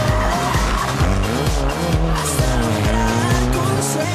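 A rally car's engine taking a tight corner, its revs falling and then rising again as it accelerates away, under loud background music with a steady beat.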